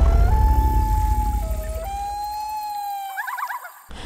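Common loon wailing over a fading low rumble of intro music: long held notes that step down and back up, ending in a quick warbling tremolo near the end.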